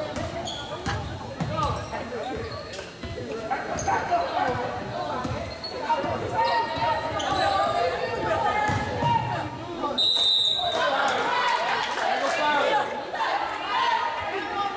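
Basketball being dribbled on a hardwood gym floor, with players' and spectators' voices echoing in the large hall. About ten seconds in a short, high referee's whistle sounds, followed by cheerleaders chanting.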